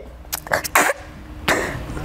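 A crying woman sniffling and sobbing into a tissue held to her face: a few short breathy bursts in the first second, then a longer, louder one about one and a half seconds in.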